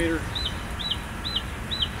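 A bird calling over and over, a short high rising-and-falling note about twice a second.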